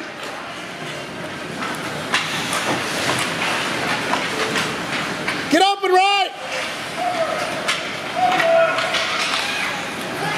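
Ice hockey rink ambience: a steady wash of arena noise with occasional sharp clacks of sticks and puck. About six seconds in, a spectator lets out one loud, drawn-out shout, and fainter calls follow.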